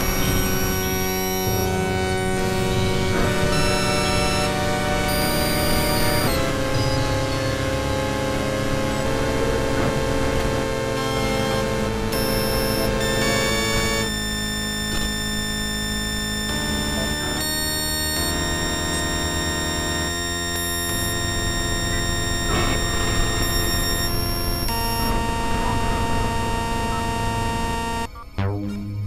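Dense, noisy experimental electronic music: many held synthesizer tones layered into a drone over a wash of noise, the cluster of tones changing abruptly every few seconds.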